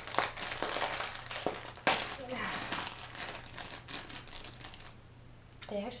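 Plastic dog-treat packaging crinkling and crackling as it is handled and opened, with a sharp, loud crackle about two seconds in, dying away over the last second or so.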